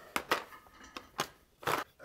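Several short clicks and knocks of a hard plastic calculator, a SwissMicros DM42, being handled and turned over on a workbench.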